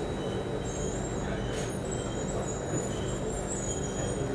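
Cabin sound of a Singapore MRT Circle Line train running between stations: a steady rumble of wheels on rail and traction-motor hum. Faint high-pitched wheel squeals come and go.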